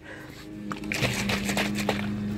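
Hand trigger spray bottle misting a fungicide solution onto plant leaves: a hissing spray that builds up about half a second in and keeps going. A steady low hum runs underneath.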